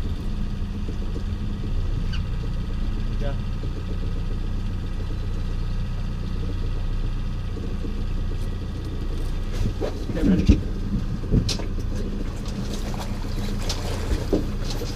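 Boat outboard motor running steadily, a constant low hum. A few brief sharp knocks and short voices come in around ten seconds in.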